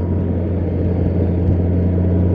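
A 2005 Honda Goldwing GL1800's flat-six engine running at a steady cruise, a steady low hum under wind and road noise, heard from the rider's seat.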